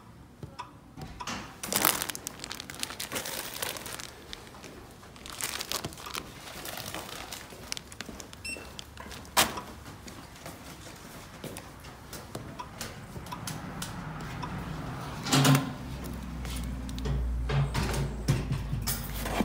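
Cardboard packages and a plastic bag being handled at a post office self-service kiosk: crinkling and rustling with scattered light knocks and clicks, one sharper knock about halfway through. A low steady hum comes in near the end.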